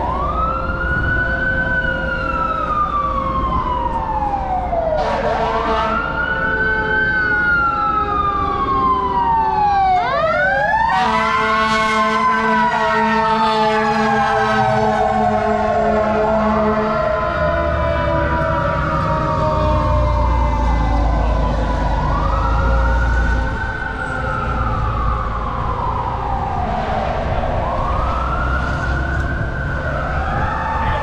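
Fire truck siren wailing, rising and falling about every five seconds, with a burst of quicker sweeps and a steady horn tone about ten seconds in. A deep engine rumble swells in the middle as the truck passes.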